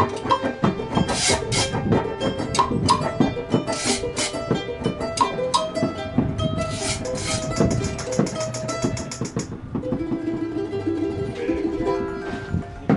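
Live acoustic band playing: a strummed acoustic guitar and a small high-pitched guitar-like string instrument over a drum and hand percussion, in a steady rhythm. The percussion stops about nine and a half seconds in and a final chord rings out.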